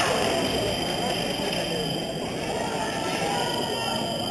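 Indistinct chatter of many people in a large hall, with a steady faint high-pitched whine over it.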